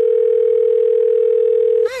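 Telephone ring sound effect: one long, steady single-pitch tone lasting almost two seconds, then cutting off suddenly.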